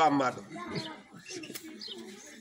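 A man's voice speaking loudly that stops shortly after the start, followed by softer, lower voiced sounds for the rest.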